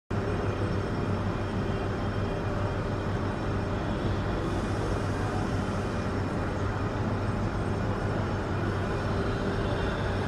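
A steady low mechanical rumble with a constant hum, unbroken throughout; no bird call stands out.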